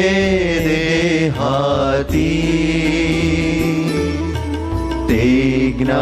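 Two male voices singing a Gujarati devotional verse together in a slow chant-like melody, drawing out long wavering notes over a steady low drone.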